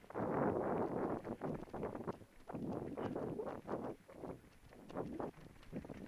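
Mountain bike rattling and knocking over rock as it descends a rough, rocky trail, with tyre rumble and wind buffeting the camera's microphone. Rapid, irregular jolts.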